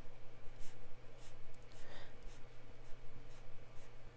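Green dot marker tapping dots onto planner paper: a series of short taps, about two a second.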